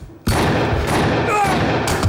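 Staged gunshot sound effect: a sudden loud burst about a quarter of a second in, followed by a noisy stretch, with a voice heard near the end.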